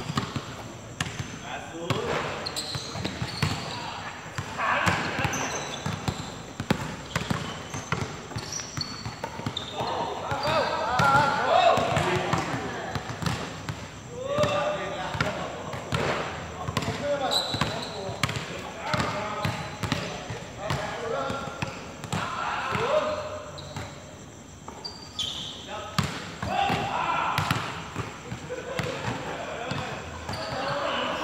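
Pickup basketball game: players' voices calling out to one another, with a basketball bouncing on the hard court in repeated knocks.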